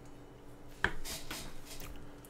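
A single sharp click a little before the middle, followed by about a second of faint, soft noises.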